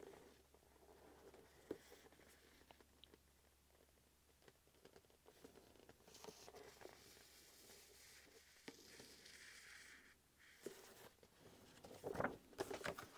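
Near silence with a few faint clicks and paper rustles from a large hardcover book and its dust jacket being handled.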